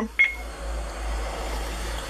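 A short, high electronic beep about a fifth of a second in, over a steady low hum in a bus driver's cab.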